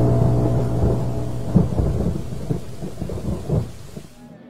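The tail of a music sting: a held low chord dies away about a second and a half in, leaving a low rumble with a few soft thuds that fades out steadily.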